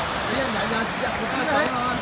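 A shallow rocky stream rushing over stones: a steady, even sound of running water, with faint voices in the background.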